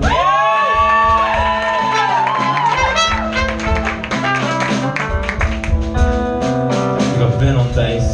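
Live blues band playing: a trumpet plays held notes that bend in pitch, over electric bass, guitar and drums.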